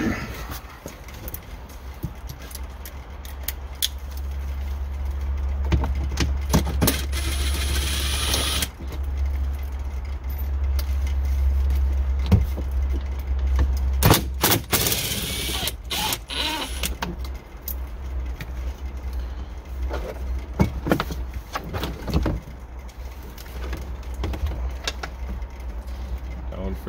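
Cordless drill with a 10 mm socket running in two short spells, about six to nine seconds in and again around fourteen to fifteen seconds in, backing out the bolts of a truck's A-pillar grab handle. Scattered clicks, knocks and rattles of plastic trim being handled, over a steady low hum.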